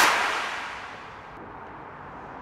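A sudden loud crash with a bright, hissing tail that dies away over about a second, leaving a steady background noise.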